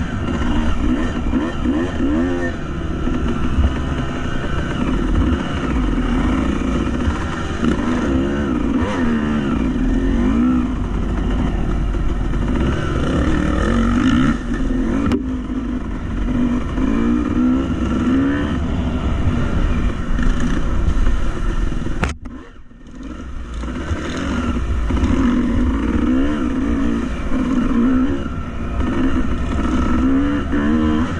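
Dirt bike engine running under changing throttle, its pitch rising and falling again and again as it revs up and backs off. About two-thirds of the way through the sound drops out sharply for about a second, then comes back.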